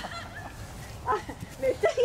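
Human voices: a drawn-out exclamation trails off at the start, then short, choppy murmurs of voices come in about halfway through.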